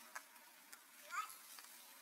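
A single short, high squeak about a second in, rising then dipping in pitch, over faint scattered clicks in an otherwise quiet setting.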